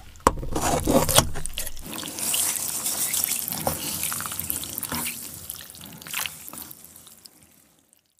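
Rustling and crinkling of a greasy paper food wrapper being handled, with a few sharp clicks of chopsticks and a plastic spoon in the first second or so. The rustle thins out and dies away near the end.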